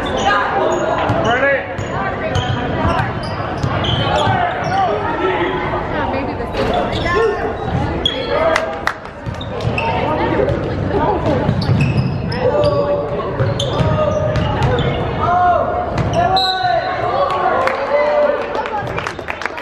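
A basketball bouncing on a hardwood gym floor in live play, with sharp knocks at irregular intervals, over players' and spectators' voices calling out, echoing in a large gymnasium.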